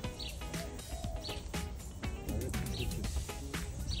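A pigeon cooing faintly under background music.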